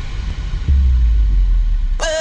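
Bounce dance mix in a breakdown, stripped down to a deep bass rumble with the upper sounds pulled away; a long held bass note comes in under a second in.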